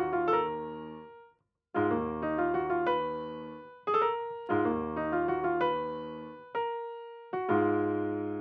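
Software piano playing a slow, dark melody over sustained chords, the phrase restarting about every three seconds with short silent gaps between, as a piano-roll pattern is played back during editing.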